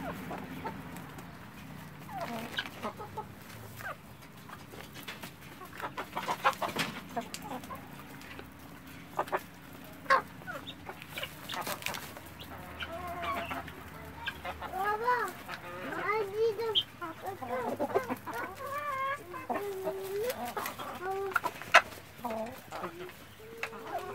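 Mixed flock of chickens and helmeted guineafowl feeding: scattered sharp clicks and short calls, then from about halfway a run of repeated clucking calls that rise and fall in pitch.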